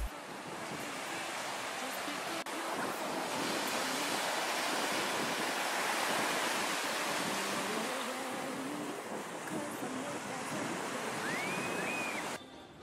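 Small sea waves breaking and washing up a sandy beach: a steady rushing surf that swells toward the middle and eases off. A short rising whistle-like tone comes near the end.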